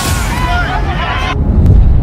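Highlight-promo soundtrack: music with a voice over it, which cuts off a little over a second in. A deep, rumbling boom then swells to its loudest near the end.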